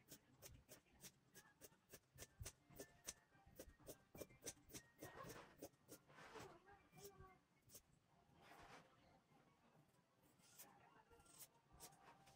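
Scissors cutting through velour fabric: a long run of faint snips, about three a second, with a short pause near the end.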